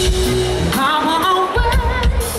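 Live band with a male lead vocal singing over acoustic guitar, bass and drums. The low end drops away for about a second in the middle while the voice moves into a held, wavering note.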